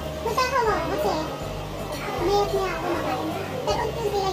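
Children's voices, high-pitched and rising and falling, with background music playing underneath.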